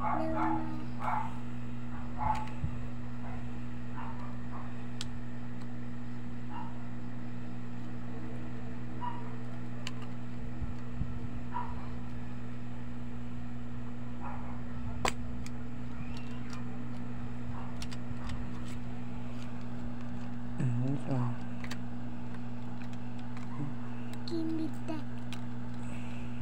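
A steady low hum runs throughout, with a few brief, faint voice sounds now and then and a short pitched cry about twenty-one seconds in.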